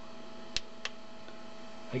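Steady electrical hum, with two small clicks about a third of a second apart a little after half a second in, as the RC transmitter's controls are handled.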